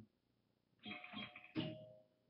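A short near-silent pause, then a man's voice about a second in, leading into speech.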